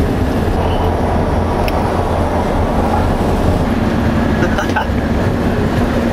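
Steady engine and road rumble heard from inside a moving coach bus, with a steady hum joining a little past halfway.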